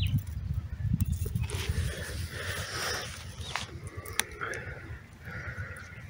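Wind buffeting a phone microphone in an open field, a gusty low rumble, with a few short falling calls in the background.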